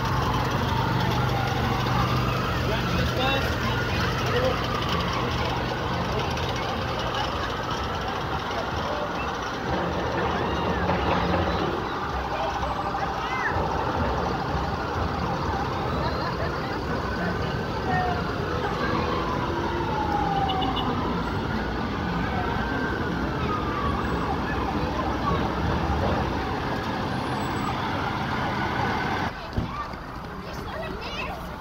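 Several emergency-vehicle sirens wailing together, their pitches sweeping slowly up and down and overlapping. A vehicle engine runs low underneath for the first part, and the sound falls away near the end.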